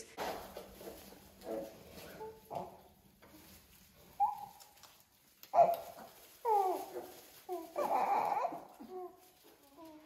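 Several short whining, whimpering cries, some falling in pitch, from the needy young one who broke into the talk. They are loudest and most frequent from about six to eight and a half seconds in.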